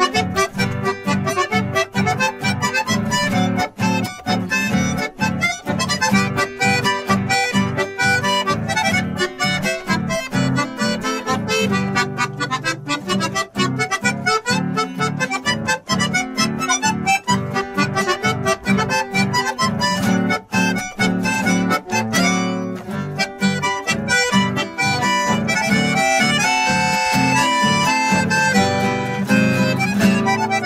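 Instrumental chamamé duet: a Piermaria button accordion plays the melody over a classical guitar strumming a steady rhythm. Near the end the accordion's melody climbs higher.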